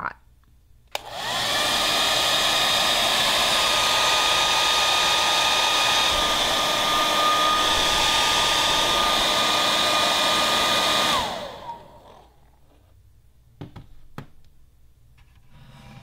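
Handheld hair dryer switched on about a second in, its motor whine rising quickly to a steady loud blowing rush with a high whine, running for about ten seconds before it is switched off and winds down with a falling whine. Two light knocks follow in the quiet.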